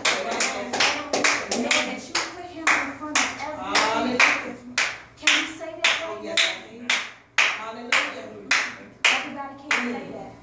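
A small group clapping hands in a steady rhythm, about two claps a second, with voices between the claps. The clapping stops near the end.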